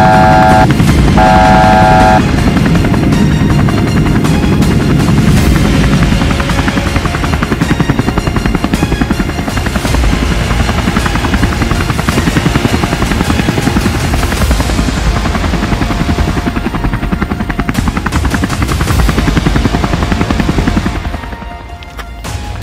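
Helicopter rotor chopping in a fast, steady rhythm under background music. A warning alarm beeps twice in the first two seconds, and the sound eases off just before the end.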